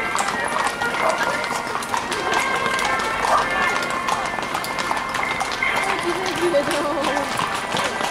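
Shod horses' hooves clip-clopping on asphalt as several ridden horses walk past, a stream of quick clicks, with voices mixed in.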